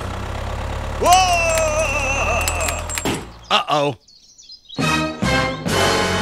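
Edited soundtrack of sound effects: a low steady engine-like hum with a cartoonish gliding vocal cry about a second in. After a brief drop-out, a steady electronic telephone-style tone begins near the end.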